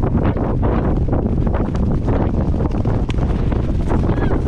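Heavy wind buffeting the microphone of a camera riding on a galloping racing pony, with irregular thuds of hooves on turf mixed in.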